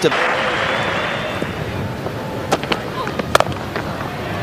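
Steady hum of a cricket crowd in the stands, with a few sharp cracks late on, the loudest being a cricket bat striking the ball for a four.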